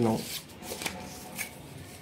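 Paper rustling with a few soft taps as the graph sheet and a ruler are handled on a desk.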